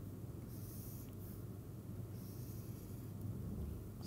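Quiet room tone with a steady low hum, and two soft hisses, one about half a second in and another at about two seconds.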